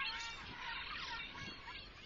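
Faint bird chirps and twitters, many quick rising and falling calls, fading away toward the end.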